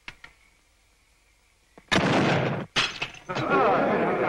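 A musket shot about two seconds in, with a second sharp crash just after, then a crowd of men shouting and whooping.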